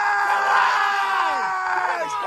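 People shouting and screaming in celebration of an equalising goal. One voice holds a long, high, steady shout while other shouts overlap it and fall in pitch.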